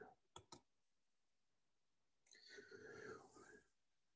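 Near silence: two faint clicks shortly after the start, then a faint breath about two and a half seconds in.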